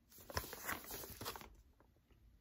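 Faint rustling of a paper record inner sleeve being handled and turned over, with a few light clicks, fading out near the end.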